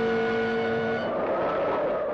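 Dramatic film-score sound: a loud held chord that cuts off about a second in, giving way to a loud rushing roar like a storm or rumble sound effect.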